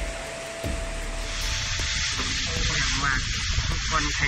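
Low background music with a single held tone over a steady rumble, joined about a second and a half in by a steady hiss.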